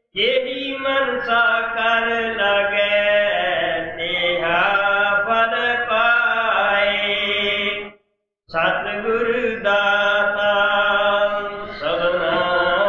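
A man chanting a Punjabi devotional hymn verse in long, drawn-out melodic phrases, breaking off briefly about eight seconds in.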